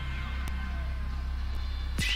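A steady low electronic drone from a radio broadcast's sound effect, with faint high tones dying away above it. It cuts off at the very end as the station jingle starts.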